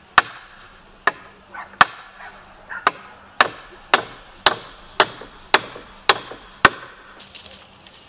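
Hammer driving nails into a wooden roof frame: about a dozen sharp strikes, spaced irregularly at first, then steady at about two a second, stopping about seven seconds in.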